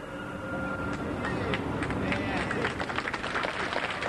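Audience applauding, the clapping starting about a second in and building, with a murmur of voices underneath.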